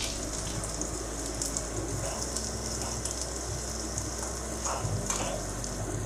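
Freshly added chopped onions sizzling steadily in hot oil with cumin seeds, a continuous crackling fry.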